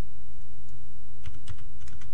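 A quick run of computer keyboard keystrokes, several clicks in about half a second, typing a new value into a field, starting a little over a second in. A steady low hum sits underneath.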